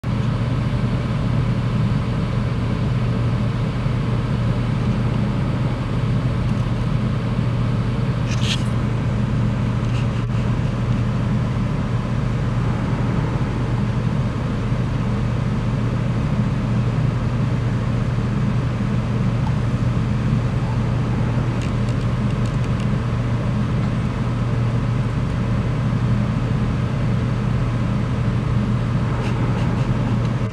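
Steady low engine drone, with a noisy hiss of wind and sea over it and a brief high squeak about eight seconds in.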